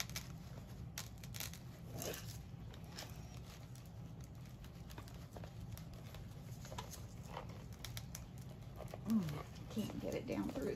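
Rustling, crinkling and small scrapes of artificial floral sprigs and dried moss as a wired floral stem is worked down into styrofoam, in scattered short clicks. A brief voice sound near the end.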